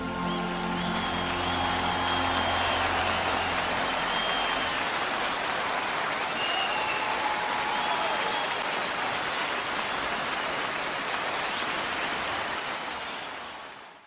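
Audience applause and cheering, with a few high calls standing out above it, while the last sustained orchestral chord dies away over the first few seconds; the applause fades out at the very end.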